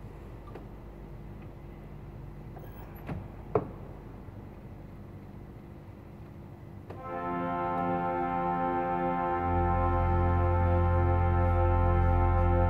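Zanin pipe organ sounding a sustained chord that comes in about seven seconds in, with a deep pedal bass note added some two and a half seconds later and held. Before it there is only a low steady hum and a single sharp knock.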